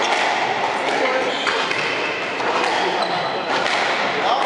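Squash rally on a wooden court: the rubber ball smacking off rackets and walls, with short high squeaks of shoes on the floor, over steady background chatter.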